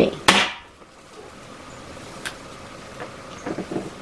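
.22 air rifle firing a single shot: one sharp report with a short ringing tail just after the start, followed about two seconds later by a faint click.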